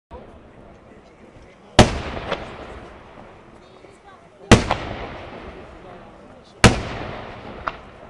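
Aerial fireworks shells bursting: three loud bangs a little over two seconds apart, each followed by a smaller, sharper crack and a long fading echo.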